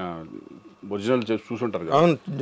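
A man speaking, with a brief pause about half a second in.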